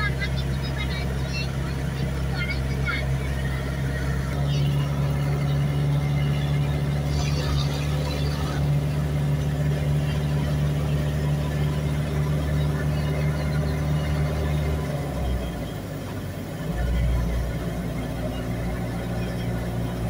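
Passenger van driving on a highway, heard from inside the cabin: a steady low engine and road drone that eases off about fifteen seconds in, then picks up again a couple of seconds later.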